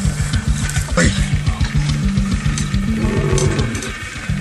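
Background music with a steady beat, over which a male lion growls as it wrestles playfully with a man.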